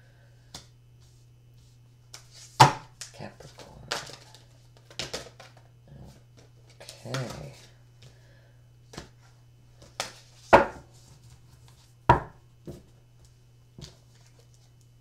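Large oracle cards being handled and laid down on a cloth-covered table: a scattered series of sharp slaps and clicks, the loudest about two and a half, ten and a half and twelve seconds in, with softer rustles between, over a steady low hum.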